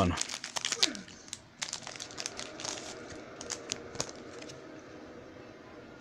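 Trading-card pack wrapper being torn open and crinkled in the hands: a quick run of sharp crackles that thins out after about four seconds.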